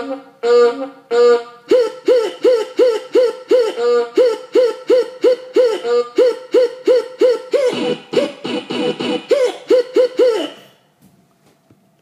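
Electronic keyboard playing a horn-like voice. A few longer notes come first, then one note is struck over and over, about three times a second, each note bending slightly up and back down in pitch. The playing stops about a second before the end.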